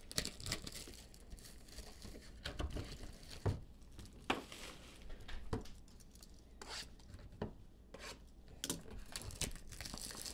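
Plastic shrink wrap being torn and crinkled off a sealed trading card box, a faint irregular crackling with a few sharper clicks.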